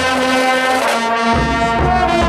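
Marching band playing held brass chords, with a deep bass part coming in a little over a second in.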